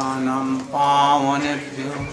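A man chanting Sanskrit Vaishnava prayers in slow, drawn-out recitation, holding two long steady notes that fade near the end.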